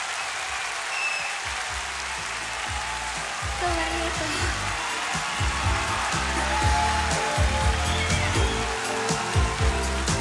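Crowd noise from a large concert audience, then a live band starts playing about three seconds in: low bass notes and a steady beat that grow louder toward the end.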